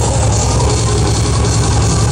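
A thrash metal band playing live, loud and dense, with distorted guitars over a heavy, rapidly pulsing low end.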